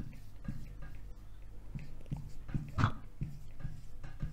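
Dry-erase marker squeaking on a whiteboard in a series of short strokes as words are written.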